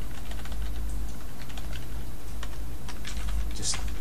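Typing on a computer keyboard: a fast run of keystrokes, denser and louder near the end, over a steady low hum.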